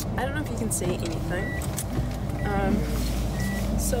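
Car cabin noise: a steady low engine and road rumble sets in about two seconds in as the car gets under way, with scattered small clicks and a few short high beeps.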